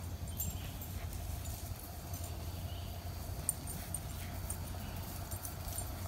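Outdoor ambience: a steady low rumble with a faint steady hum and scattered faint high ticks.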